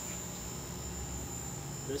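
Steady hum of a fish-store aquarium system's pumps and equipment, with a faint thin high whine above it.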